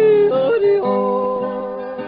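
A male country singer yodeling over guitar accompaniment. A held note flips up and back down about half a second in, then settles on a steady lower note that fades a little toward the end.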